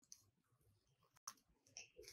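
Scissors snipping green craft paper: a few faint, sharp clicks spread over the two seconds, with near silence between them.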